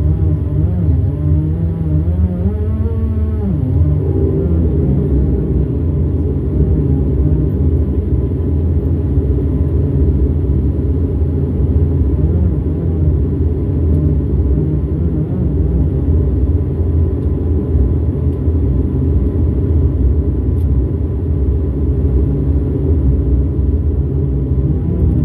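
Twin turboprop engines and propellers of a Bombardier Dash 8-400, heard inside the cabin, droning steadily at low power as the aircraft moves slowly on the ground. In the first few seconds the propeller tones waver and warble in pitch before settling.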